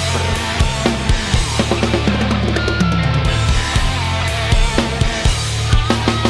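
Playback of a full rock drum kit played over a heavy band recording: dense drum hits, cymbals and bass drum over sustained low bass and guitar.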